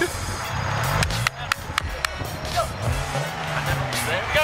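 Car engine firing on a push start and revving, its pitch rising about a second in and again near the end.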